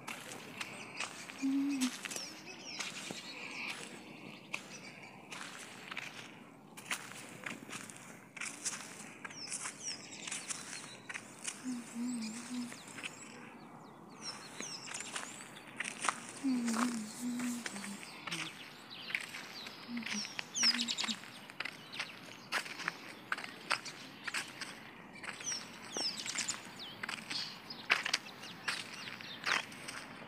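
Footsteps in slide sandals on a dirt road, a steady run of short scuffs and taps, with birds chirping now and then.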